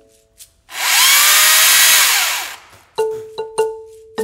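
A chainsaw runs in one loud burst of about two seconds, its pitch rising and then winding down. Light mallet-percussion music notes follow near the end.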